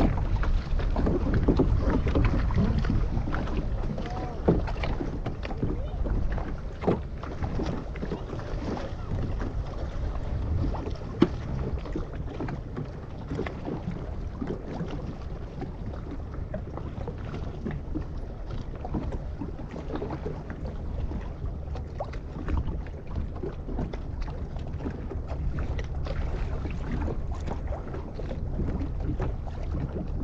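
Wind buffeting the microphone over small waves lapping and slapping against a small boat's hull, with a few sharp knocks scattered through.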